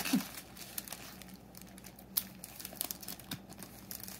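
Plastic zip-top bag crinkling as fingers press along its zipper to seal it: faint, scattered crackles and small clicks.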